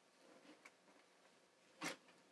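Near silence: room tone, with a few faint ticks and one brief soft noise near the end.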